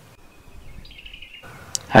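Faint outdoor background with a thin, high bird call of steady pitch lasting about a second, stepping up in pitch partway through.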